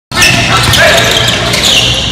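Basketball game on a hardwood court: sneakers squeaking in short high-pitched chirps and a ball bouncing, with players' voices.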